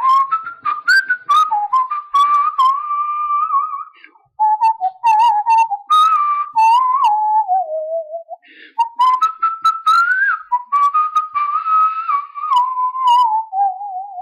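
A person whistling a solo melody with no accompaniment, the tune broken by two short pauses.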